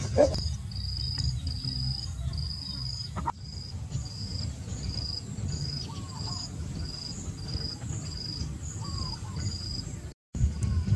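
An insect chirping in an even rhythm of high-pitched pulses, about two a second, over a low outdoor rumble.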